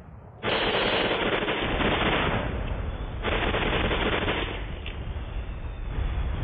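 Battle sound effects from an old war-film soundtrack: two long bursts of rapid machine-gun fire, the first about two seconds long and the second just over one, over a continuous low rumble. The sound is dull and narrow, as on an old film recording.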